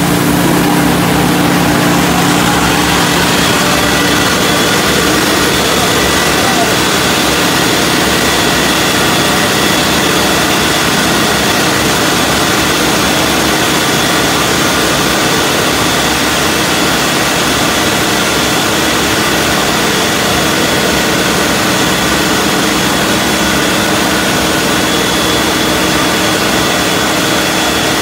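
Car wash air-dryer blowers running: a loud, steady rush of air with a fixed whine, jumping up in level right at the start after a rising spin-up.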